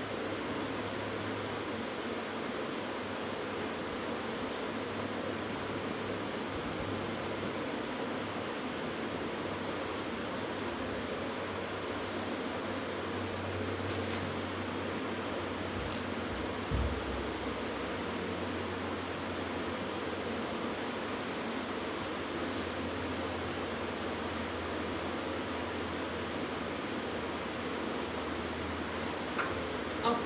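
Steady background hiss with a low hum, like a fan or air conditioner running in a small room, with one soft low thump about two-thirds of the way through.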